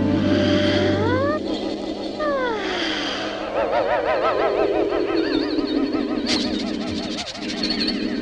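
Orchestral cartoon score closely following the action: sweeping glides rise about a second in and fall away between two and three seconds, followed by a wavering, trilling melody. One sharp accent lands a little past six seconds in.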